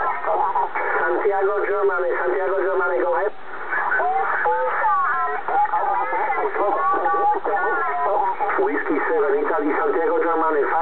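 Amateur single-sideband voice signals on the 10-metre band, heard through a Kenwood TS-690S transceiver's speaker: thin, narrow-band radio speech that runs on almost without a break, with a brief dip a little past three seconds in.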